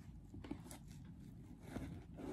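Faint rustling and a few light taps of kraft paper being pressed down and handled on burlap.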